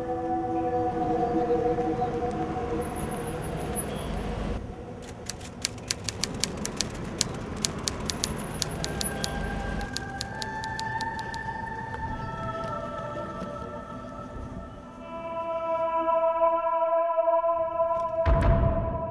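Eerie background music of long held notes that change pitch every few seconds. A low thud about four seconds in starts a run of sharp, irregular clicks lasting several seconds.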